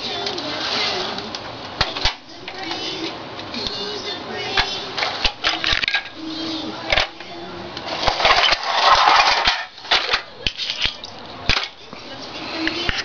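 A crawling baby vocalizing on and off, with frequent sharp clicks and taps of hard objects being handled, and a louder noisy stretch about eight seconds in.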